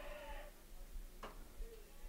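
Faint outdoor ballfield ambience with a low rumble, and a single soft click a little past a second in.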